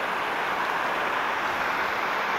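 Steady, even rush of shallow river water running low over stones and a little water spilling over a small dam's spillway.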